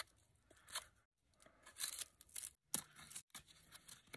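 A blade carving and shaving wood off a throwing club: a run of short, faint scraping strokes with brief pauses between them.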